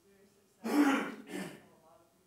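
A person clearing their throat close to the microphone, in two harsh bursts starting about half a second in, much louder than the faint speech around it.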